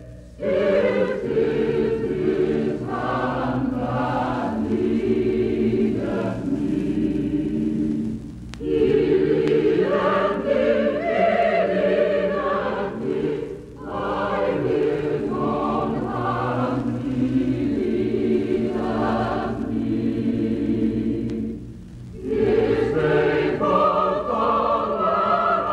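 Choir singing in long sustained phrases, broken by brief pauses.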